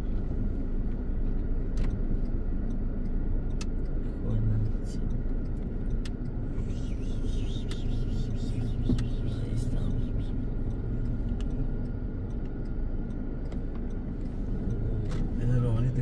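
Car running at low speed, heard from inside the cabin: a steady low engine and road rumble as it creeps into a driveway, with a few light knocks and rattles.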